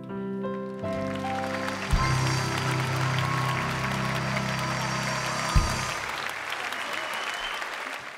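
The song ends live: a few rising notes, then a held low chord struck with a hit about two seconds in and cut off with a second hit near six seconds. Audience applause builds under the music and carries on after it stops.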